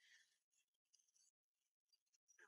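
Near silence: only a very faint hiss, with the sound dropping out in places.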